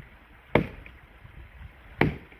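Axe chopping into a log: one sharp chop about half a second in, and another at the very end, about a second and a half later.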